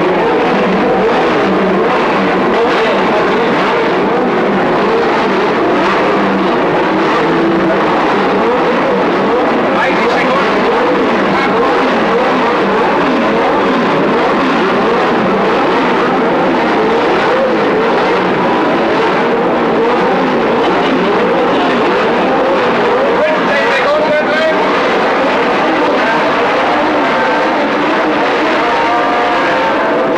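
Several 1970s Formula One engines revving on the starting grid, their throttles blipped over and over so that many pitches rise and fall at once in a dense, unbroken din.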